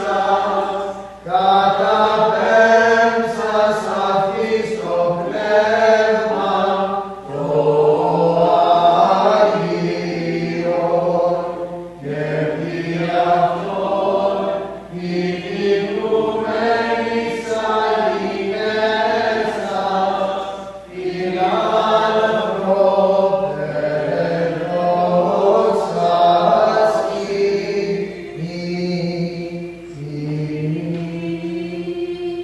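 Unaccompanied Byzantine chant, sung in long phrases with brief pauses between them.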